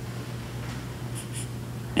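A pause in speech: a steady low hum and faint room noise, with a couple of faint soft sounds about a second in.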